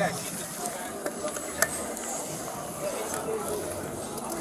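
A police patrol bicycle being handled and set off: a few sharp clicks and knocks from its parts, the sharpest about one and a half seconds in, over a steady background hiss.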